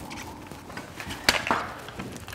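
A Scott SCBA air pack being handled as it is taken up to be put on, with two sharp knocks close together just past the middle as its frame and cylinder hit against something.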